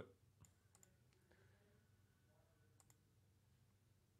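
Near silence with a few faint, sharp clicks: one about half a second in, one near a second, and a double click near the end.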